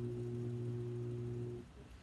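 Electric potter's wheel motor humming steadily, then cutting off about one and a half seconds in.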